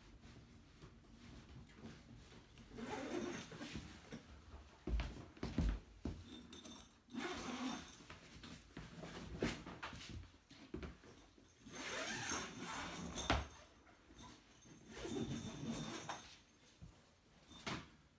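Heavy canvas tent fabric rustling and scraping in bursts as it is handled and pulled back, with a couple of dull thumps about five seconds in.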